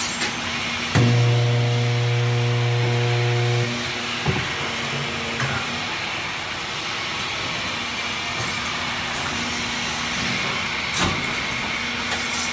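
Steel grating welding machine at work: a loud, low electrical hum starts about a second in and lasts almost three seconds, over a steady machine drone. A short hiss comes at the start, and sharp metallic knocks at about four and eleven seconds.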